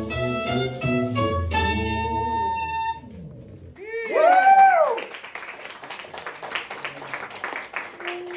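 A small jazz group with saxophone and bass plays the closing phrase of a tune, ending on a held note that stops about three seconds in. A loud pitched call that swoops up and down follows, then audience applause.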